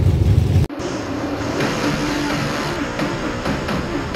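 A low rumble of engines and wind at a dirt track cuts off abruptly under a second in. It is replaced by race car engine noise from in-car footage mixed with music.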